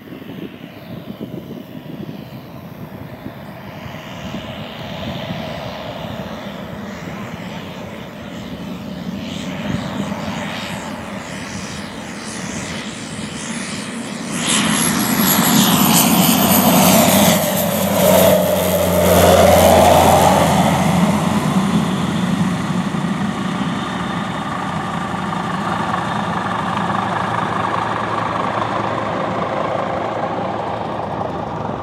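Single-engine floatplane on amphibious floats making a low pass. Its engine and propeller grow louder as it approaches, are loudest about halfway through with a drop in pitch as it goes by, then ease off as it climbs away.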